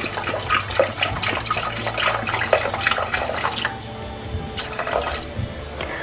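Chicken broth poured from a carton into a pot of sautéed chicken and vegetables, a splashing stream of liquid that eases off a little over halfway through, over background music.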